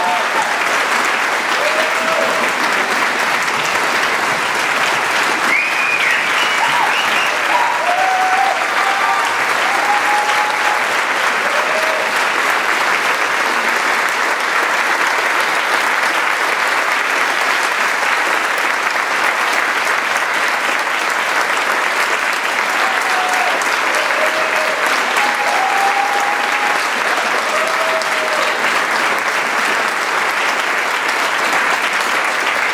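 A large theatre audience applauding steadily, with scattered cheers and calls rising over the clapping.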